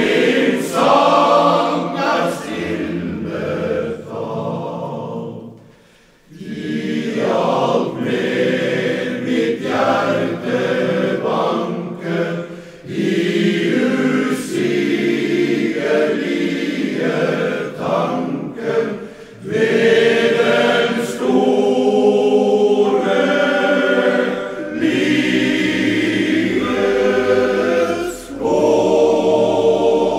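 Men's choir singing, many male voices together in sustained phrases, with a brief pause between phrases about six seconds in.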